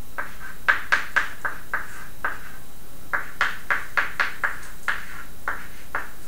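Chalk tapping and scraping on a blackboard as it writes: a quick, irregular run of short taps in two bursts, with a short pause between them.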